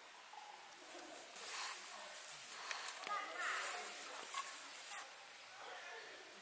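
Paracord and a nylon puffy jacket rustling as the cord is knotted around a tree trunk and coiled by hand, in short scattered rustles, with faint voices in the background.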